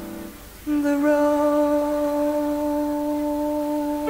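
Music: a held note fades out just after the start, and after a short pause a single long, steady note without vibrato begins about two-thirds of a second in and is held to the end.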